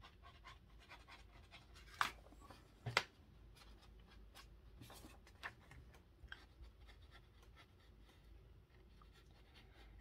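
Faint rustling and sliding of paper sheets being handled on a cutting mat, with two sharp short taps about two and three seconds in.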